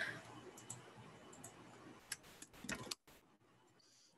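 Faint computer keyboard typing and mouse clicks, a handful of short clicks, stopping about three seconds in.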